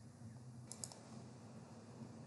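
A quick cluster of about three faint clicks from a computer mouse, over a low steady room hum.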